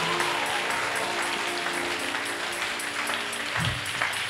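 Soft church-band music of held, sustained chords under a steady haze of applause from the congregation.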